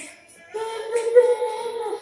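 A high voice singing unaccompanied, holding long steady notes; it breaks off briefly at the start and comes back in about half a second in.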